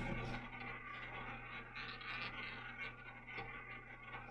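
Roulette ball rolling around the wooden ball track of a double-zero roulette wheel: a faint, steady scraping whir, with a low steady hum underneath.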